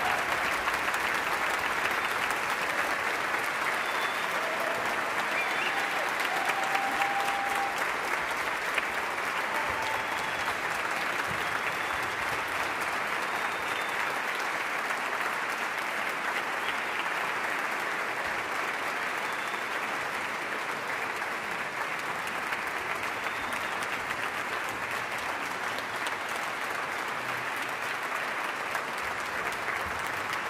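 Sustained audience applause, easing off a little as it goes on.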